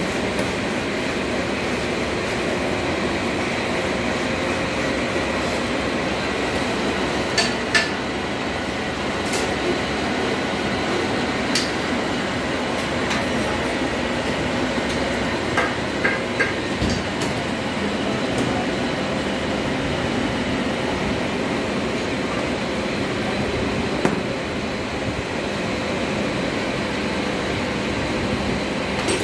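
Steady workshop machinery hum, with occasional sharp metallic clicks and taps, a few close together near the middle, from hand tools working the screws on an electro-hydraulic thrustor's motor housing.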